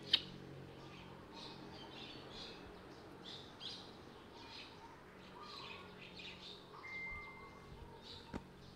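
Small birds chirping in the background, short high calls repeating throughout, with one steady whistled note about seven seconds in. A single sharp click just after the start is the loudest sound.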